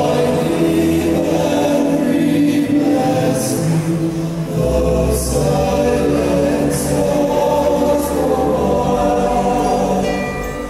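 Choir singing long, held chords with musical accompaniment.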